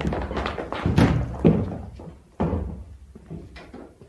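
A few dull thuds and knocks, irregularly spaced, the sharpest about two and a half seconds in, fading toward the end.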